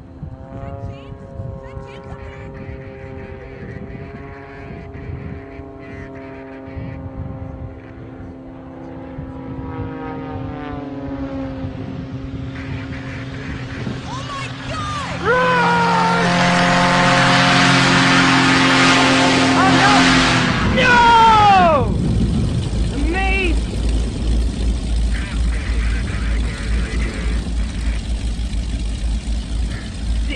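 Model aircraft engine running in the air as the plane spins down after losing its right wing; the note grows steadily louder, and from about halfway it jumps louder and higher, with sharp downward swoops in pitch around twenty seconds in, followed by a steady low rumble.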